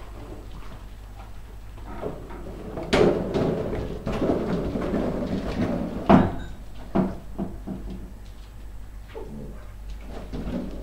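Smooth collie puppies playing with an inflated balloon on a hard floor: several knocks and thumps, the loudest about three and six seconds in, with rubbing and scuffling between.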